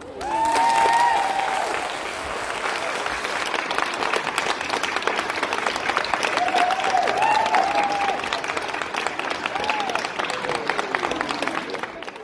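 Audience applauding and cheering at the end of a performance, with high whoops soon after the applause starts and again about halfway through.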